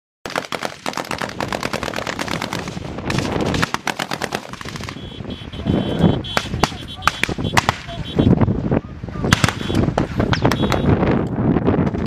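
Sustained automatic gunfire in a firefight: rapid bursts of many shots a second, easing briefly about five seconds in before picking up again.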